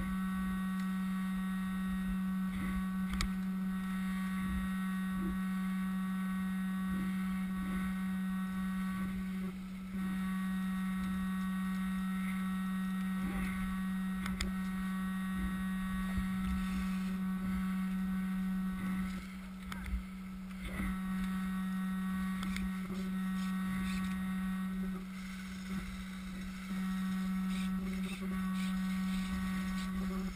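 A steady electrical buzz: a low hum with a ladder of higher tones above it, cutting out briefly a few times, with faint knocks beneath.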